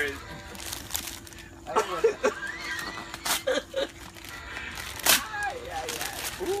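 Gift wrapping paper being ripped off a box in a few quick, separate tears, with brief voices and laughter between them.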